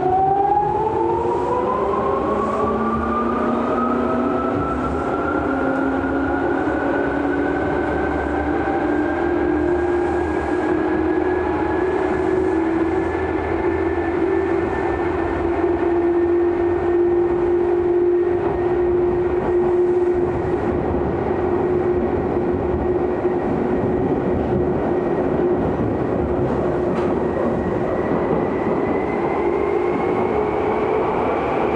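Tokyu 8500 series electric train heard from inside the car as it accelerates: the traction motors' whine climbs steeply in pitch over the first ten seconds or so, then levels off and rises slowly again near the end, over a steady rumble of wheels on rail.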